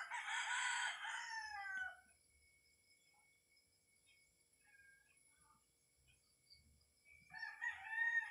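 A rooster crowing: one crow that ends in a falling pitch about two seconds in, then a quiet spell, then another crow starting near the end.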